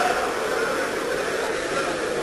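Steady hiss of an old broadcast recording's background noise in a pause between speeches, with faint traces of voices in the hall.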